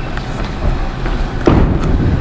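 A single heavy thump about a second and a half in, over the steady din of a busy bowling alley.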